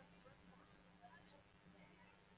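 Near silence: a faint steady hum with faint, distant voices.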